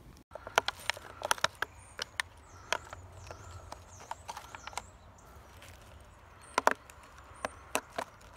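Sharp plastic clicks and knocks from small clear plastic pots being handled on dry leaf litter as their lids are taken off. There are irregular clusters of clicks early on and again near the end.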